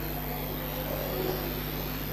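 Steady low hum and hiss from the hall's public-address system, with no voice on it.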